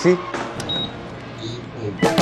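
A split air conditioner's indoor unit gives one short electronic beep, acknowledging a voice command to switch on. A faint low hum follows as the unit starts up.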